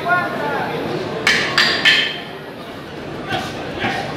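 Boxing-match crowd murmur with a voice shouting near the start, then three sharp, harsh sounds in quick succession a little over a second in.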